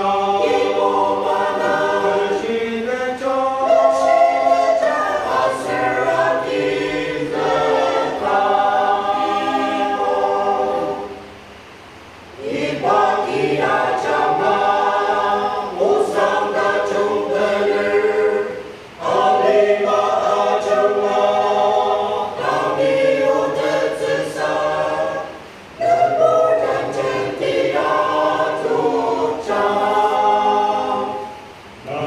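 Mixed choir of women and men singing a hymn unaccompanied, in long held phrases with a few short breaks between them.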